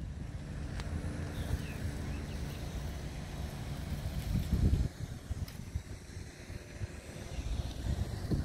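Steady low road-traffic rumble, with a car passing close by about four and a half seconds in.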